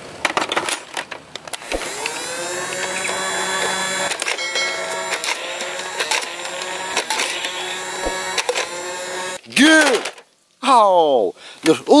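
A battery-powered toy dart blaster's motor whirring: a few clicks, then at about two seconds a whine that rises in pitch and holds steady for about seven seconds, with occasional clicks as it fires.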